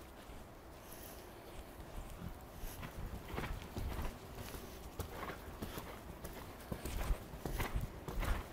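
Hoofbeats of a horse cantering on sand arena footing, faint at first and growing louder over the last few seconds.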